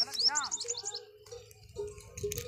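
A small bird chirping: a quick run of short, high, rising chirps in the first second, then fainter.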